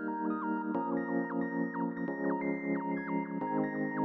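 Background music only: soft synthesizer chords changing about every second and a half, with a light keyboard melody stepping between notes above them.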